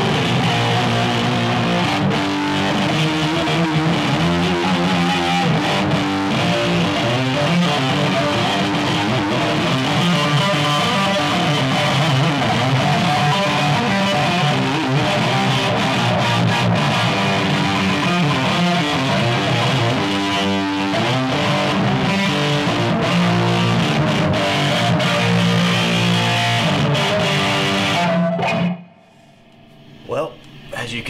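Double-neck electric guitar played loud through a Laney Lionheart 50 valve amp head, a continuous run of chords and riffs. The playing stops suddenly about a second and a half before the end.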